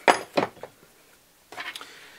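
Metal hand tools clinking against each other and the workbench as they are handled and set down: two sharp clinks just after the start, then a softer short clatter about a second and a half in.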